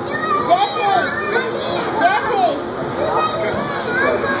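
Young children's voices on a bouncing kiddie drop-tower ride: high calls and shrieks that rise and fall in pitch. The two loudest come about half a second and about two seconds in.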